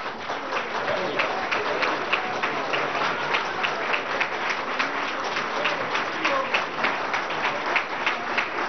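Audience applauding: steady, dense clapping from a crowd, with a few voices mixed in.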